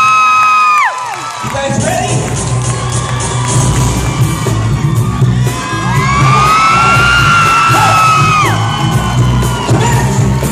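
Concert music over a PA with a pulsing bass beat under a cheering crowd. A nearby fan lets out a long, high-pitched scream that ends about a second in, and another one about six seconds in that lasts a couple of seconds.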